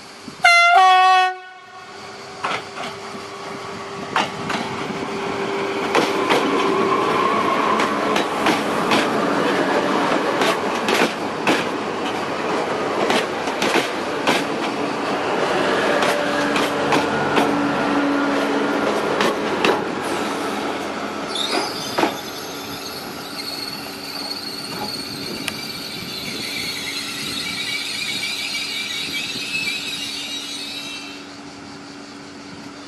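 SNCF B 81500 bi-mode AGC railcar sounding its horn in one short, loud blast, then running past with its wheels clicking over the rail joints over a low steady hum. In the last several seconds a high-pitched squeal, typical of the brakes as the train slows into the station.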